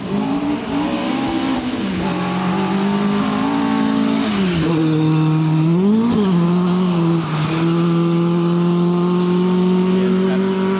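Mk2 Ford Escort rally car's Pinto four-cylinder engine driven hard on a gravel stage as it passes and pulls away. The revs drop and climb several times over the first seven seconds, with gear changes and lifts, then hold a steady, slowly rising note.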